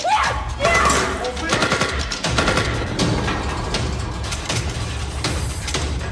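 Action-scene soundtrack: after a man's shout, rapid gunfire with many shots in quick succession over a deep, steady music score.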